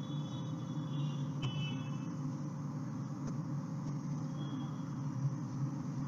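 A steady low background hum, with faint high thin tones coming and going and a few faint clicks.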